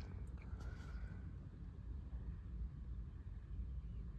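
Wind buffeting a phone microphone: a low, uneven rumble with a faint hiss above it.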